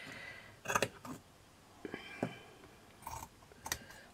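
Scissors snipping slits into the edge of a piece of canvas fabric: several short, sharp cuts spaced out, about a second apart.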